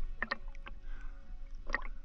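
Water splashing and lapping against a camera held at the surface, with a few short splashes: one pair about a quarter second in and another near the end.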